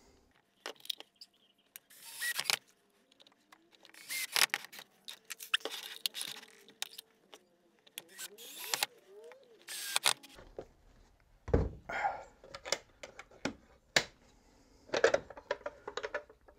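Bosch cordless drill driving wood screws into a wooden box to fix its toggle clamps, in several short runs with the motor pitch rising and falling as each screw goes in. In the last few seconds, sharp clicks and knocks of the metal clamps and wooden boxes being handled.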